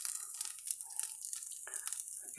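Ground beef in a frying pan giving a faint, steady sizzle and crackle, with a few small clicks.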